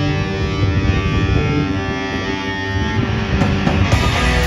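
Live rock band playing an instrumental passage: distorted electric guitars and bass hold long, ringing chords, and sharp drum and cymbal hits come in near the end.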